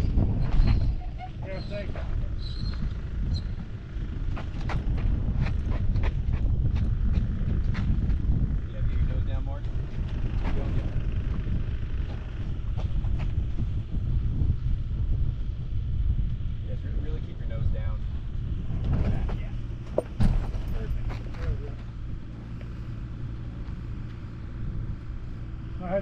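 Wind buffeting the microphone on an open ridge launch: a low rumble that swells and eases with the gusts, with faint voices now and then.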